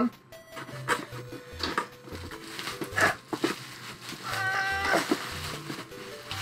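Bubble wrap and plastic packing crinkling and crackling as hands rummage through a cardboard box, over faint background music. About four and a half seconds in there is a brief high-pitched vocal sound.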